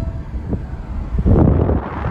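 Wind buffeting the microphone from a moving car, over steady low road and engine rumble, with a strong rough gust about halfway through.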